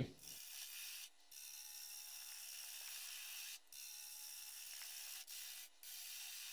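Faint, steady scraping hiss of a gouge cutting a spinning wood vase blank on a lathe, broken by a few brief dropouts.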